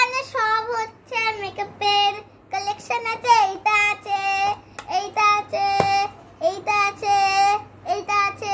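A young girl singing in a high voice, held notes in short phrases with brief breaks between them, and a single click about six seconds in.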